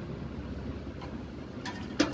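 Desktop PC's cooling fans running with a steady low whir after the machine is switched on again. A few sharp clicks near the end.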